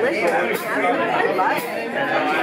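Overlapping chatter of several people talking at once in a large room, with no music playing.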